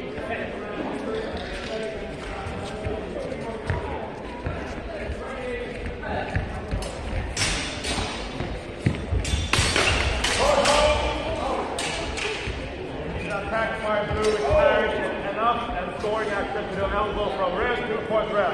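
Steel longswords clacking together and feet thudding on a sports-hall floor in a fencing exchange: a quick cluster of sharp knocks midway. Voices and shouts follow in the hall afterwards.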